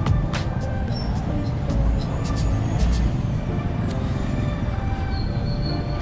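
Busy street traffic: cars and motorcycles run with a constant low rumble, while music plays. A few sharp knocks stand out in the first three seconds.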